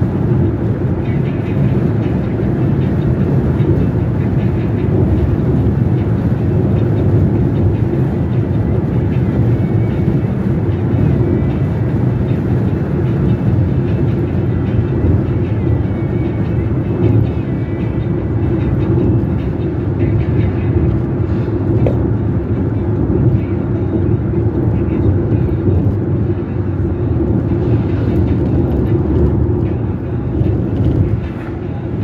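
Steady engine and road noise heard inside a car cruising along a highway: a constant low rumble from the tyres and engine, with no sharp events.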